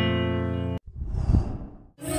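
Logo jingle: a ringing plucked-string chord that cuts off abruptly less than a second in, followed by a soft breathy whoosh that swells and fades over about a second.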